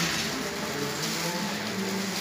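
Indistinct murmur of several people talking at once over a steady hiss of background noise, with no clear words.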